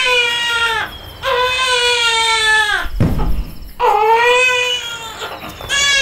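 A baby crying: a run of long wails with short pauses between, each dropping in pitch as it ends.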